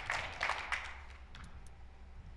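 Faint applause dying away, with a few last scattered hand claps.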